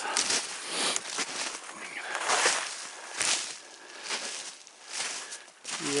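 Footsteps through shallow snow over dry leaves, with brush and twigs rustling, uneven steps that ease off for a moment near the end.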